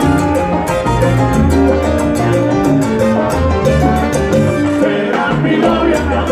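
Live salsa band playing a loud, steady instrumental passage, with congas, bass and keyboard.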